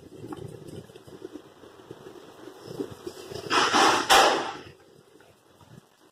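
Faint rustling of fingers rubbing a rabbit's ear to warm it and swell the ear vein before bleeding, with a louder rush of rustling noise about three and a half seconds in that lasts about a second.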